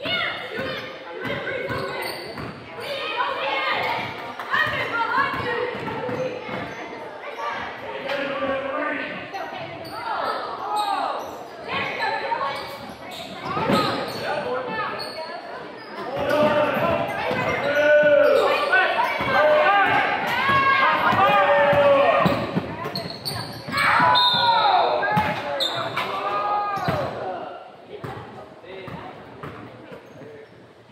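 Basketball game in a large, echoing gym: a ball bouncing on the hardwood court mixed with shouting from players, coaches and spectators, the voices loudest through the second half.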